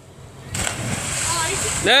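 A person jumping off a pier and hitting the harbour water feet first, with a splash about half a second in, followed by over a second of hissing spray and churned water.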